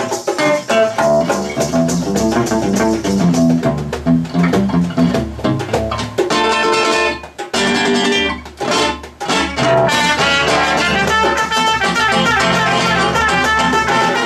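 Live acoustic trio playing a lively klezmer tune: a nylon-string classical guitar picks rapid notes over hand percussion, and a trumpet plays sustained melody notes in the second half.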